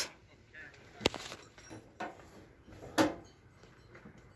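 Two short, sharp knocks, about a second apart, from handling at a drill press, with a short spoken word near the end.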